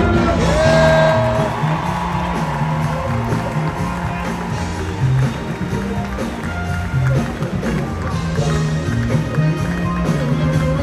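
Live soul band (drums, bass, guitar, keyboards and horns) playing a steady instrumental vamp with a repeating bass line, with a brief vocal shout near the start.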